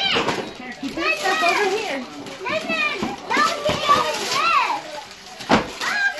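Several young children chattering and calling out in high, excited voices over one another, with wrapping paper being torn and a sharp rip or knock about five and a half seconds in.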